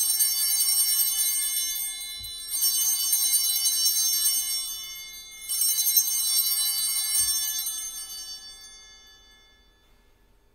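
Altar bells rung three times at the elevation of the host, each ring a bright shimmering peal that fades slowly, the last dying away near the end.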